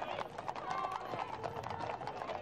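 Hooves of carriage horses and mounted escort horses clip-clopping on a paved road, many overlapping strikes in an uneven patter.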